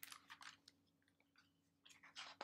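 Near silence with a few faint clicks and rustles in the first second as a hardcover picture book is handled and opened.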